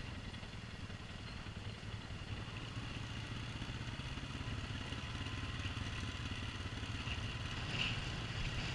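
ATV engine running steadily at low speed while riding down a gravel trail, a low, even engine sound throughout.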